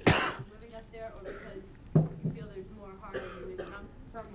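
A man coughing into a lectern microphone: one hard cough right at the start, then a lower double cough about two seconds in, with faint voices in between.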